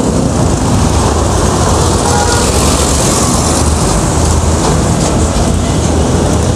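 Loud, steady roar of busy city street traffic: cars, vans and motorcycles running through an intersection.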